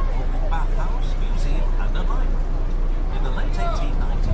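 Open-top tour bus moving slowly, its engine under a steady low rumble of wind on the microphone, with people's voices around it.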